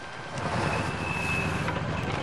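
Cartoon sound effect of a vehicle driving past through a wet street. Its low rumble and a noisy wash of spraying water swell up about half a second in, splashing mud over the child standing at the roadside.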